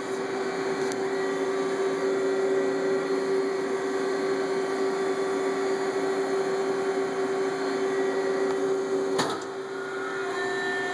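Tsugami CNC mill running with a steady hum held at one pitch over a mechanical hiss, and a single sharp click about nine seconds in.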